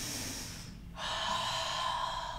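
A woman breathing deeply and audibly while holding a yoga pose: one breath fading out just over half a second in, then after a short pause another long breath starting about a second in.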